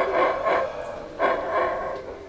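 Howler monkey howling: two long roars, the first at the very start and the second just over a second in, each fading away.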